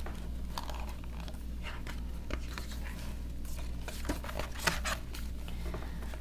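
Pages of a hardcover picture book being handled and turned: scattered soft paper rustles and crinkles, over a steady low hum.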